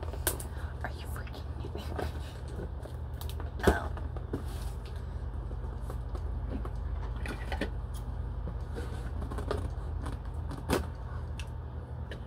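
Steady low hum with scattered light clicks and taps, including a sharper knock about four seconds in and another near the end.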